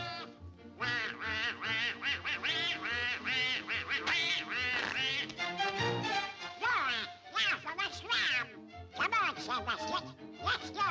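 Donald Duck's quacking cartoon voice chattering in bursts over a bouncy orchestral cartoon score.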